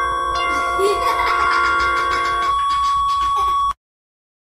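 Effects-processed logo jingle holding a ringing, bell-like synthesized chord with one strong high note on top. The lower notes fade out about two and a half seconds in, and the high note cuts off abruptly near the end.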